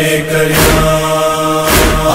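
Noha recitation: a male voice holds one long, steady sung note in a chant-like lament, and a sharp percussive beat lands near the end.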